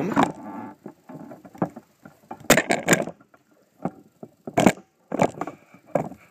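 Handling noise from the camera being zoomed and moved: a few irregular knocks and rustles, with a cluster about halfway through and two more near the end.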